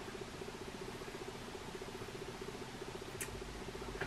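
Faint steady background buzz with a fast flutter, and one small click about three seconds in.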